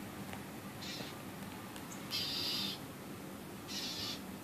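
A northern mockingbird giving harsh, raspy scolding calls, three faint calls about a second or so apart, the middle one the longest, as it mobs a cat.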